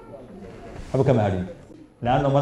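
A man's voice: a short low-pitched spoken utterance about a second in, after a quiet lull in the talk.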